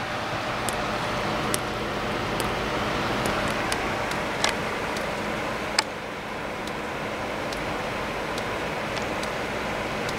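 Steady rain falling, with a few sharp ticks of water dripping from a roof leak.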